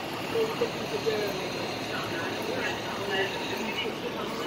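Faint voices of people talking in the background over steady outdoor street noise.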